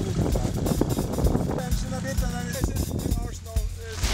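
Arctic Cat snowmobile engines running at idle, a steady low drone, with background music over it.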